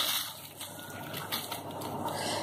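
Cumin seeds poured from a plastic container into a dry iron kadai over coriander seeds and dried red chillies: a soft hiss of falling seeds with a few light ticks.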